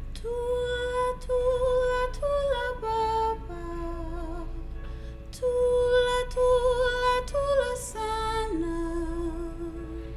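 A woman singing a lullaby alone, without accompaniment, in slow held notes. There are two phrases, each stepping downward, with a short breath between them about halfway through.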